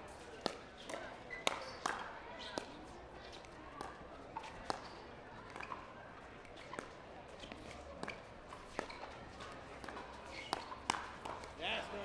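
Pickleball rally: paddles striking the plastic ball and the ball bouncing on the hard court in a long run of sharp pops, about two a second. A low crowd murmur runs underneath.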